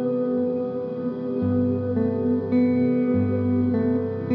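Epiphone acoustic guitar playing slow, ringing chords with no voice. A new low bass note comes in about a second and a half in and again at about three seconds, as the chords change.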